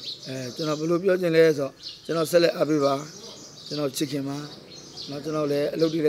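A man talking in Burmese in three stretches, with birds chirping steadily in the background throughout.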